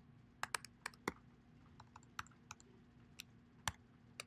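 Faint typing on a computer keyboard: a quick run of keystrokes in the first second, then a few scattered taps.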